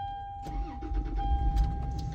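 Toyota Land Cruiser engine cranked on the starter and catching on a newly programmed key, a sign that the immobilizer accepts the key. A steady electronic warning tone sounds throughout.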